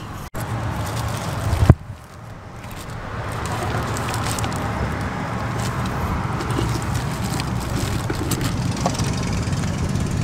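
A sharp knock a little under two seconds in. After it comes a steady low background rumble that builds over the next couple of seconds and then holds, like distant road traffic.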